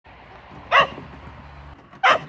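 A dog barks: one short, loud bark about three-quarters of a second in, and a second bark starting at the very end.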